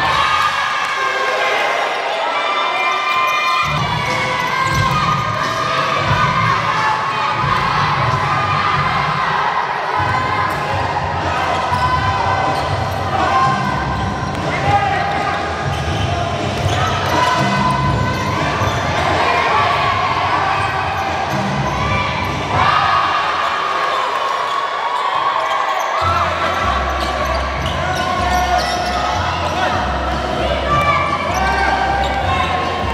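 Live basketball game sound: a ball being dribbled and bounced on a hardwood court, under a steady mix of players' and onlookers' voices. The background shifts abruptly several times as clips change.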